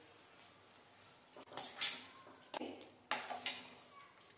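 Steel spoon scraping and knocking against a stainless steel pan while stirring gooseberries in sugar syrup: several short strokes starting about a second in.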